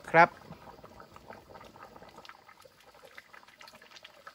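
Coconut-milk curry simmering in a wok: faint, steady bubbling with scattered small pops.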